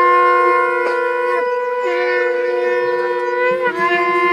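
Nadaswaram, the South Indian double-reed temple pipe, playing loud long-held notes, sliding to a new note about one and a half seconds in and again near the end.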